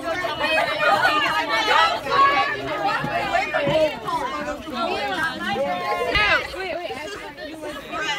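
Many children's voices chattering and talking over one another, with no single speaker standing out.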